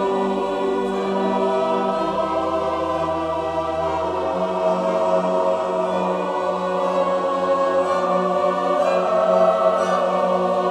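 A large mixed choir singing sustained sacred choral music with instrumental accompaniment. A deep bass note is held underneath for a couple of seconds near the start.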